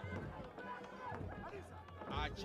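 Faint voices over a steady low hum from the broadcast's pitch-side audio.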